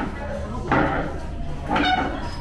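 Busy restaurant background: indistinct voices of other diners, with a sudden louder noise about two-thirds of a second in and another just before the end.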